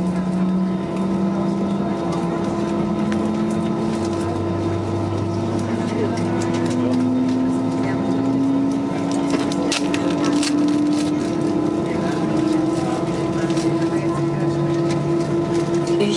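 Airbus A320-214's CFM56 jet engine spooling up during start, heard from the cabin: a whine that rises slowly and steadily in pitch over about twelve seconds, over the steady hum of the cabin air and APU.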